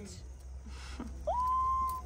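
A woman's high, drawn-out "aww", rising and then held on one note, over a steady low hum.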